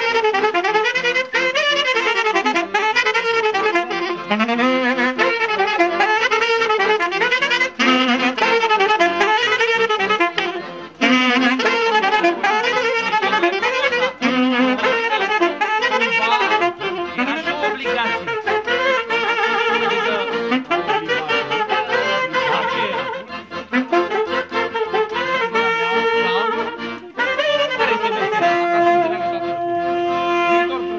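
Romanian folk dance music for a hora, a wind instrument carrying a fast, ornamented melody. Near the end it settles on longer held notes.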